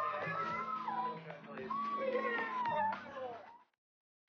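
High-pitched excited squealing voices that rise and fall in pitch, over steady background music. Everything cuts off abruptly about three and a half seconds in.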